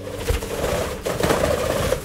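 A book page being turned: a rustle of paper, with a low bump about a third of a second in.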